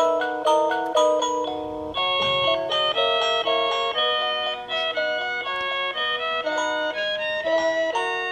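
Electronic Christmas melody playing from the built-in speaker of an animated, light-up Christmas village ornament with a toy train running round it: a tune of clear, steady notes, one after another.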